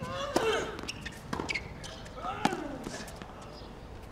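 Tennis rally: the ball cracks off the rackets about once a second, with a player's grunts on some of the shots.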